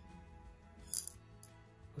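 A single light metallic clink about a second in, with a fainter tick just after: a small aluminum weighing tray knocking against the tray on a digital scale as gold flakes are tipped onto it. Faint background music underneath.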